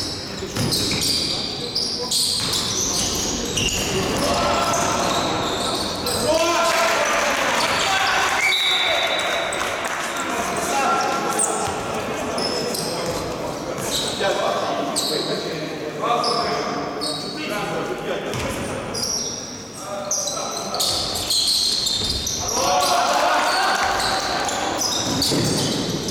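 Basketball game in a large, echoing gym: the ball dribbled and bouncing on the court floor, shoes squeaking, and players calling out to each other at times.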